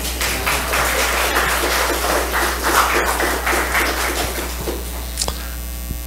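Congregation applauding in a church hall, dense at first and thinning out near the end.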